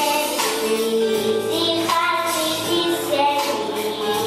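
A young girl singing a song over live instrumental accompaniment with a steady percussive beat.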